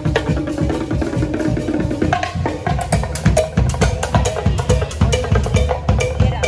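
A live band plays upbeat music from a boat: a drum kit with bass drum, snare and cymbals keeps a quick, steady beat over a shifting melodic line.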